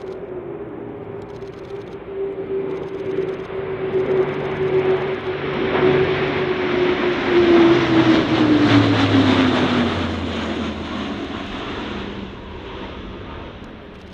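The four TP400 turboprops of an Airbus A400M Atlas drone as the aircraft flies low past. The sound builds, with the propeller tone holding steady, then peaks just past the middle. As the aircraft goes by, the tone drops in pitch and the sound fades away.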